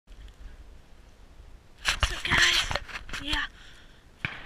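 Knocks and rubbing from a handheld action camera being handled close to its microphone, loudest about two seconds in, over a low rumble. A man's voice comes in near the end.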